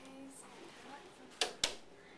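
Two sharp clicks about a quarter of a second apart, a second and a half in, over faint room sound.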